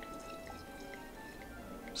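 Champagne poured slowly into a tilted flute: a faint trickle with scattered tiny fizzing ticks, under soft background music of held notes.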